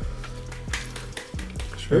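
Soft background music with a few faint, short crackling noises.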